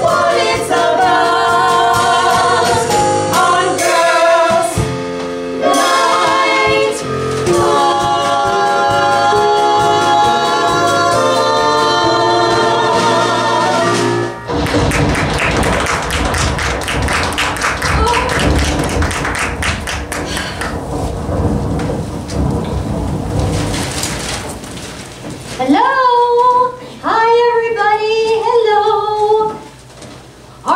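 Women singing a stage-musical number over a backing track. About halfway through, the music cuts off and a rain-and-thunder storm sound effect fills roughly eleven seconds. Women's voices rise again near the end before the sound drops away suddenly.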